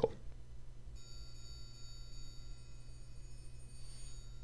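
Sampled 6-inch Grover triangle played back from a notation program: quarter-note strikes begin about a second in and ring on into a sampled triangle roll, a high, bright, sustained shimmer.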